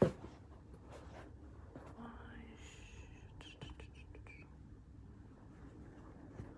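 Faint whispering close to the microphone, with a sharp knock at the very start.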